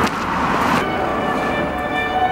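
Road traffic noise for about the first second, then background music with long held notes comes in and carries on.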